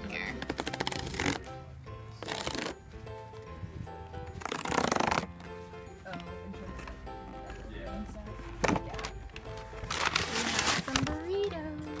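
Cardboard tear strip being ripped from a sealed delivery box in several short tearing pulls, over steady background music.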